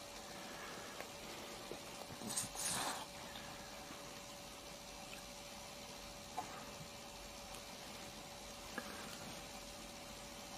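Quiet room tone: a steady hiss with a faint steady hum, a brief rustle about two and a half seconds in, and a couple of soft clicks later on.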